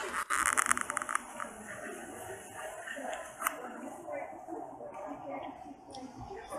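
Burning paper crackling and rustling as a pile of notes is poked with a stick, with a dense run of crackles in the first second and scattered pops after. Indistinct voices murmur underneath.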